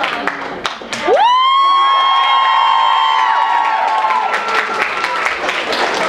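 Audience cheering and applauding, with a long high-pitched cheer held for about three seconds from about a second in, then clapping and shouting.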